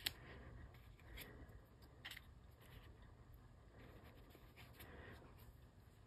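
Near silence: room tone with a few faint, soft ticks of small paper pieces being handled and pressed down, one at the very start and another about two seconds in.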